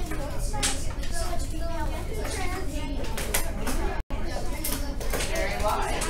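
Classroom chatter: many children talking at once, with scattered light clicks. The sound drops out for an instant about four seconds in.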